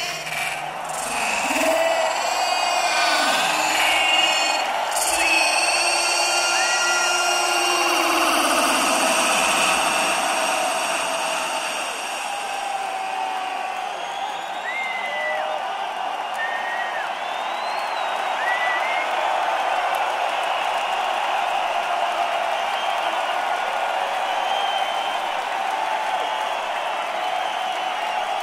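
Large concert crowd cheering and shouting, with a few whistles rising above it now and then. Single voices stand out in the first several seconds before it settles into steady cheering.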